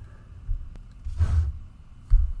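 A man's breath into a close microphone about halfway through, a soft airy rush, with low thuds of mic or desk handling around it.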